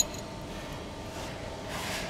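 A sharp metallic clink as the loose steel locking plate and its bolts are handled, then faint handling noise with a brief rub near the end.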